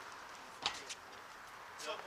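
Faint outdoor background with distant voices, and a single sharp tap about two-thirds of a second in.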